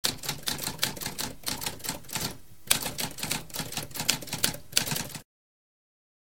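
Typewriter typing: a quick run of key strikes, several a second, with a brief pause about two and a half seconds in. The typing stops a little after five seconds.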